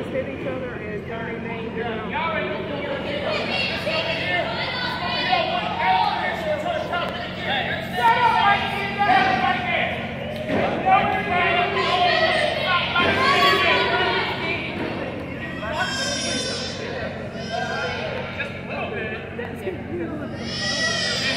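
Indistinct voices talking and shouting in a large, echoing gymnasium, with a higher-pitched voice calling out near the end.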